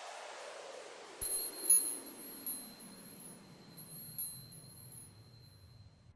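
Sound effect for an animated logo. A falling whoosh dies away, and from about a second in there is a scatter of faint, high, sparkling chime tinkles.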